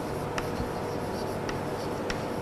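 Chalk writing on a chalkboard: faint scratching with a few light taps as letters are formed.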